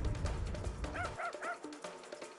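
A low music hit fades out, then a small dog yips three times in quick succession, about a quarter second apart. Each yip is a short cry that rises and falls in pitch.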